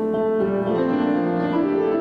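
A grand piano playing slow, sustained chords, each struck and left to ring.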